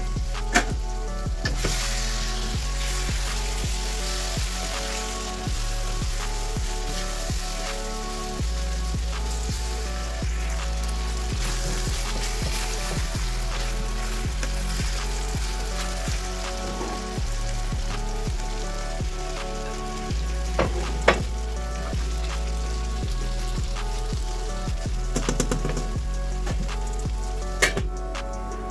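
Chicken pieces and sliced onions sizzling as they fry in a stainless steel frying pan, stirred with a wooden spoon, with a few sharp knocks of utensils on metal. Background music plays underneath.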